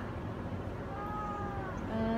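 A domestic cat giving one long, even meow about halfway through, a chatty reply to being talked to.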